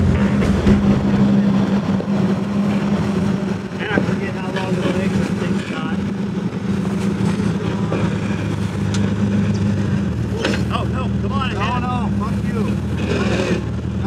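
Jeep Wrangler Rubicon engine running at steady low revs as the Jeep crawls up a rock ledge, with a few sharp knocks along the way.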